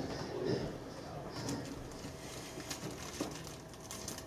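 Faint murmured voices from the congregation answering a question, over quiet room tone, with a faint steady tone in the background in the second half.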